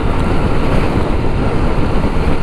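Steady wind rush on the microphone over the Dafra Next 300's liquid-cooled engine running at a steady highway cruise. The bike is in sixth gear and kept under 5,000 rpm because it is still being run in.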